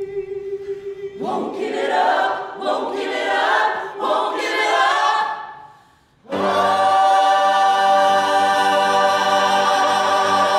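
Ensemble of musical-theatre singers singing together: a held note, then a swelling chorus of moving, bending lines that fades away about six seconds in. It is followed by a sudden, loud, long-held chord.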